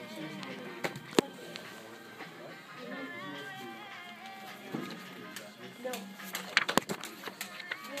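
Sharp slaps of a ball being struck by hand in a game of table volleyball: two about a second in and a quick run of hits near the end, over background music and chatter.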